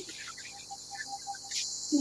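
A faint chirp at one steady pitch, repeating rapidly, about six or seven times a second, over a light hiss.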